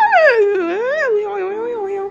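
A high wordless howl, its pitch sliding up and down in long swoops, over a few held electronic keyboard notes.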